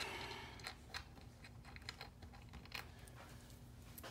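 Faint, scattered small clicks and taps of hands handling small hardware and the parts of a camera rig on a desk, over a low steady hum.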